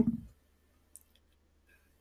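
A spoken word trails off, then near silence broken by a few faint small clicks about a second in.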